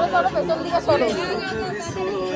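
Several people talking over one another: overlapping chatter from a small group gathered close together.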